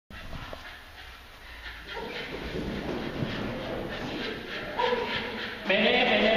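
Small dog barking excitedly at the start of an agility run. The calls begin about two seconds in and are loudest near the end.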